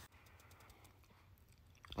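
Near silence: room tone with a few faint ticks in the first second.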